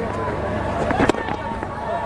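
Cricket bat striking the ball with a single sharp crack about a second in, over the steady noise of a stadium crowd with distant voices.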